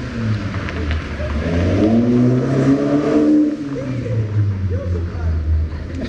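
A car engine revving hard as it accelerates past on the street, its pitch climbing for a couple of seconds through the middle and then falling away, over the low rumble of traffic.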